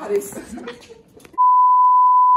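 A single steady high-pitched beep, the test tone that goes with television colour bars, starting about a second and a half in after a moment of voices and holding at one pitch; it is the loudest sound here.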